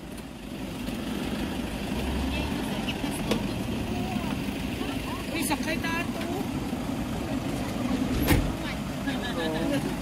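Passenger vans and a car driving slowly past close by, a steady engine rumble with tyre noise on asphalt that grows a little louder toward the end. A sharp knock sounds a little after eight seconds in.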